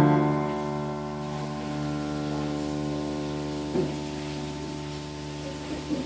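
A piano chord left to ring, its notes sustaining and slowly fading, with a couple of faint brief sounds about four seconds in and again near the end.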